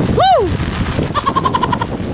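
Heavy rain and wind rushing on the microphone. Just after the start there is a short vocal exclamation whose pitch rises and falls. In the second half there is a quick run of about eight short high-pitched pulses.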